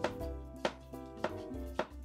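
A chef's knife slicing a cucumber on a plastic cutting board: four evenly spaced knocks of the blade meeting the board, about every 0.6 seconds, over background music.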